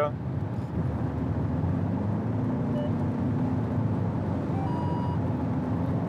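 Steady road, tyre and engine noise inside a car's cabin at motorway speed, a low even rumble with a faint engine hum.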